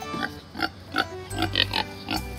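Kunekune pig giving several short grunts as it walks out of its house, just roused from sleep.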